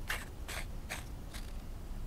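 Threaded aluminium sections of a mechanical mod being screwed tight by hand: a few faint scrapes and clicks of the threads turning.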